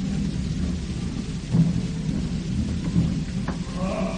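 Opera orchestra in an old live recording playing a loud, low, rumbling passage, with heavier drum strokes about a second and a half in and again about three seconds in. Choral voices begin to enter near the end.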